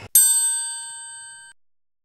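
A single bright metallic ding, like a struck bell, ringing out in several clear tones and fading for about a second and a half before cutting off abruptly.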